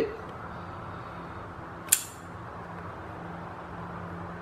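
One sharp metallic click about two seconds in: a folding knife's blade flipped open and snapping into its lock, with its pivot screw just loosened a little. A faint steady low hum runs underneath.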